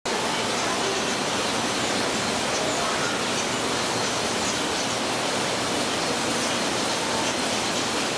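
A steady rushing noise of flowing water, even and unbroken.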